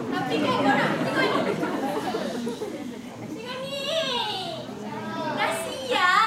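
A woman's voice speaking on stage in a high, childlike voice, the pitch rising and falling in a sing-song way.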